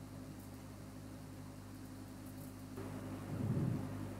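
Quiet room tone with a steady low hum. A brief, louder low sound comes near the end.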